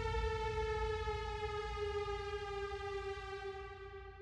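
A single sustained note from a trailer score, rich in overtones, sliding slowly down in pitch and fading away over a low rumble.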